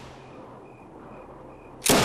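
A single flintlock gunshot near the end: sudden and loud with a short ring-out, after a quiet stretch.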